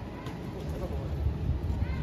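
Wind rumbling on the microphone outdoors, with a few faint short high-pitched calls near the start and near the end.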